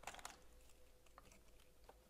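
Near silence with a few faint clicks and rustles of handling as a pen is worked into the elastic pen loop of a small ring-bound organiser.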